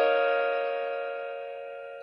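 A held piano chord from a karaoke backing track, fading slowly and steadily.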